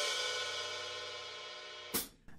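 Open hi-hat cymbals, struck with a drumstick with the pedal released, ringing and slowly fading. Near the end a short click comes, and the ring stops.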